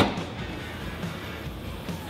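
A single sharp click at the start as the 2015 Ford Focus hatchback's liftgate latch is released by its handle, quickly fading, over steady background music.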